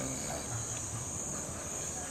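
A steady, high-pitched insect chorus, unbroken throughout.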